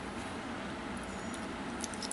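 Steady background hiss with a low hum and no distinct event. A few faint clicks come near the end.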